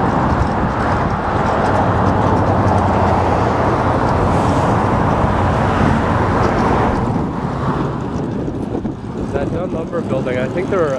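Road traffic noise: a loud, steady rush with a low engine drone under it, easing off about seven seconds in.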